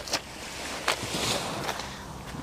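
Footsteps on a sand-and-pebble beach, a few separate crunching clicks, over a low wind rumble on the microphone.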